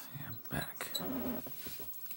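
A person's soft, breathy mouth sounds made close to the microphone, with small clicks in between.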